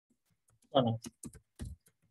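Computer keyboard being typed on in a short run of keystrokes, broken by a brief spoken word about three-quarters of a second in.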